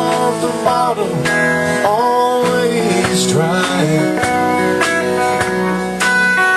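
Live band playing a slow country ballad, an instrumental passage between sung lines: guitars to the fore with bent, gliding notes, over bass and drums.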